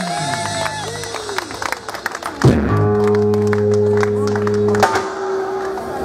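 Live rock trio of electric guitar, bass and drums ending a song: a final chord is struck hard about two and a half seconds in and rings out for about two seconds before fading, with scattered claps over it.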